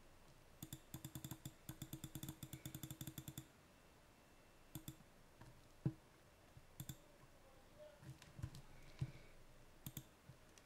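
Faint clicking from a computer's mouse and keys while navigating a list on screen. There is a quick run of about ten clicks a second for nearly three seconds, then single clicks every second or so.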